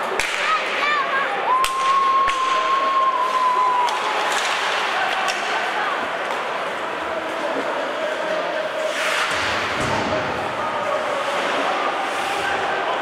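Ice hockey play in a small rink: sharp cracks of sticks on the puck, skates scraping the ice and a rush of noise about nine seconds in, under spectators' voices. A steady held tone sounds for about two seconds near the start.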